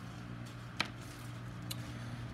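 Polymer clay charms clicking as they are handled and set down on a table: one sharp click a little under a second in and a fainter one near the end, over a steady low hum.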